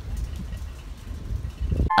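Low, uneven outdoor rumble on a handheld phone microphone, like wind and distant street noise, with a few faint ticks. It cuts off abruptly just before the end.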